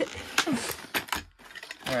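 Plastic blister pack of carabiner clips being pried open by hand: a run of irregular sharp clicks and crackles from the plastic, then a short pause about two-thirds of the way through.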